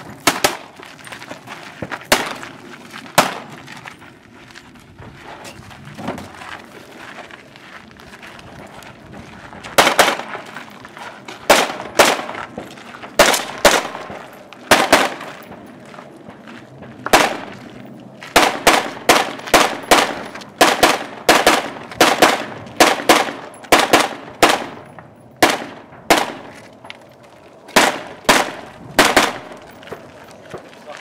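Repeated gunshots from a 3-gun competitor: a few spaced shots early on, then fast strings of shots, many in quick pairs, from about ten seconds in. The shots in the middle are from a scoped rifle.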